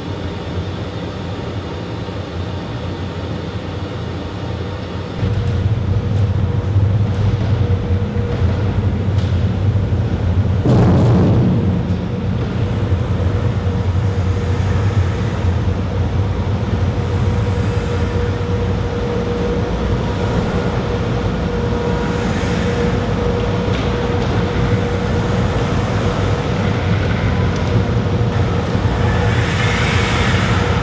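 Airbus A320 full flight simulator running: a steady low rumble with a faint steady hum, stepping up in level about five seconds in and swelling briefly about eleven seconds in.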